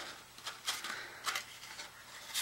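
Cardstock handled and pressed into a fold by hand: faint paper rustles, with two soft brushing sounds about a third of the way in and past the middle.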